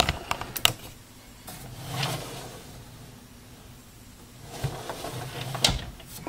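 Handling sounds of an air fryer on a sliding appliance caddy on a countertop: a few light clicks and knocks near the start and again near the end, with a soft brushing sound about two seconds in.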